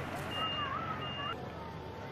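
Dump truck reversing alarm beeping: a single steady high tone repeated about every 0.7 s, twice, then stopping, over a low engine hum.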